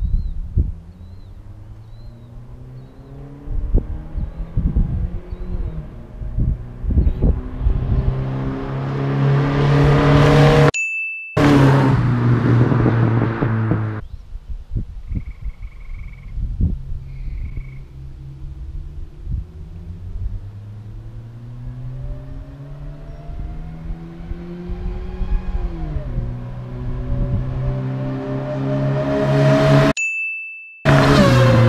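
Chrysler 2.2-litre four-cylinder of a 1990 Plymouth Sundance at full throttle on two drag-strip passes, engine pitch climbing and getting louder as the car comes toward the camera; in the second pass, with an AMR 500 supercharger fitted, the pitch drops once for an upshift and climbs again. The owner finds the supercharger a restriction at full throttle that makes the car slower. A short chime sounds partway through, at a hard cut.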